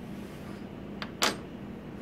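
A light click about a second in, then a sharper short click just after it, from handling tweezers at the bonder's work holder. A low steady machine hum runs underneath.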